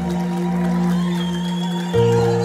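Slow worship music: a sustained chord held steadily, without singing.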